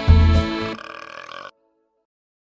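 Upbeat children's song music with a strong beat ends about three-quarters of a second in. A brief noisier sound follows and cuts off suddenly to silence about halfway through.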